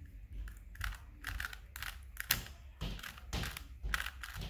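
Plastic 3x3 Rubik's Cube being twisted by hand: a quick, irregular run of clicks and rattles as its layers are turned one after another.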